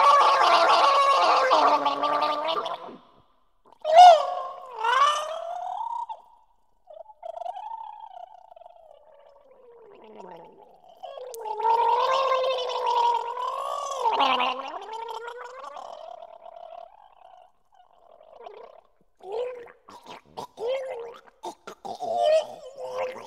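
Human throat gargling performed as music: pitched, gliding gargled tones, loud and sustained for the first few seconds. Then come short sharp gargles, a faint falling glide, a louder wavering gargle in the middle, and short broken gargles near the end.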